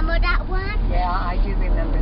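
A young child's high-pitched voice, words not made out, over the steady low rumble of a car heard from inside the cabin.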